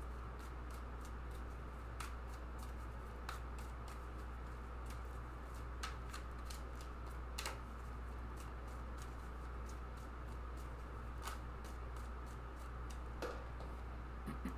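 A deck of tarot cards being shuffled by hand: soft, irregular clicks and flicks of card on card, with a few sharper snaps along the way.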